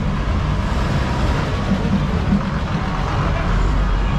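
A bus engine running as the bus pulls past close by, its low rumble growing louder near the end.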